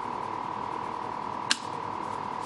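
A steady high-pitched tone with a fast, faint pulsing: the monitor tone of the exciter as a tuning pulser keys it for amplifier tuning. A single sharp click about one and a half seconds in.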